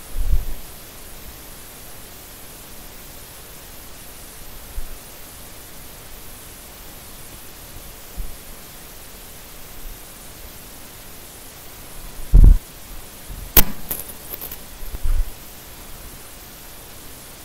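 Steady room hiss, broken by a few low thumps: one right at the start, a very loud one about twelve seconds in, and another near the end, with a sharp click just after the loudest.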